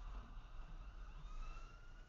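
Low, steady road rumble inside a moving car, with a faint high whine that rises slowly in pitch during the second half.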